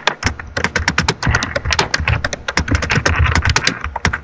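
Typing on a computer keyboard: a quick, unbroken run of keystrokes.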